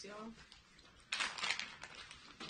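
A plastic snack bag crinkling and rustling as it is picked up, a short burst a little over halfway in.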